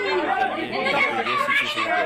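Overlapping voices of several people talking at once.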